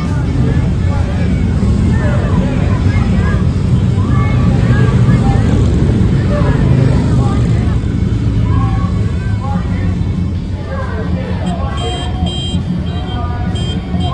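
Police motorcycles and motorcade vehicles driving past, a steady engine rumble, with many voices of a roadside crowd calling out over it. The rumble eases a little near the end.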